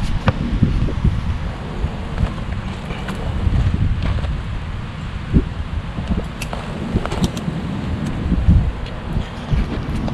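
Wind rumbling on the microphone, with a few brief handling knocks, one of them clear about five seconds in.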